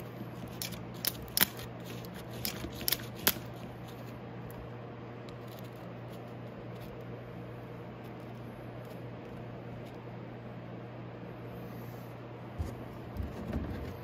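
Metal battery-charger clamps clicking and clacking sharply several times in the first few seconds as they are handled, then a few lighter knocks near the end. Under it runs a steady low hum from the old transformer-type battery charger, switched on and plugged in.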